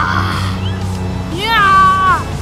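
A child's wordless high-pitched vocal cries: a short one at the start, then a longer one about one and a half seconds in that rises, holds steady and falls away. They play over background music with a steady low hum.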